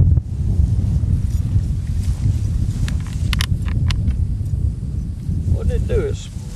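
Wind buffeting the microphone as a steady low rumble, with a few sharp clicks about three to four seconds in and a voice starting near the end.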